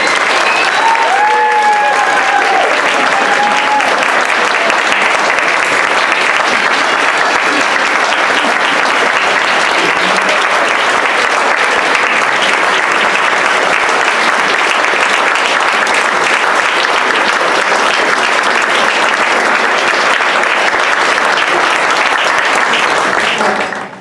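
Banquet audience applauding steadily, with a single held high note from someone in the crowd in the first few seconds. The clapping dies away just before the end.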